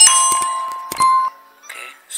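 Bell-like chime sound effect of a subscribe-button animation: a bright ding that rings and fades, then a second, shorter ding about a second later.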